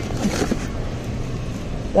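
Steady low hum of a store's background noise, with faint voices in it.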